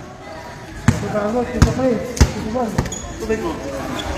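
A basketball bouncing on a concrete court: a few single dribbles about two-thirds of a second apart, with voices talking in the background.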